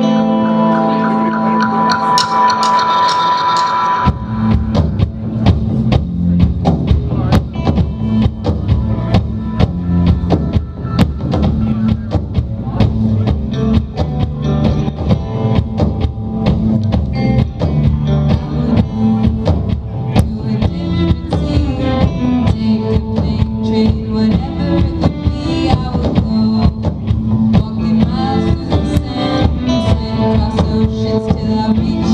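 Live indie rock band starting a song: a held, ringing chord for about four seconds, then the drums and the rest of the band come in with a steady beat.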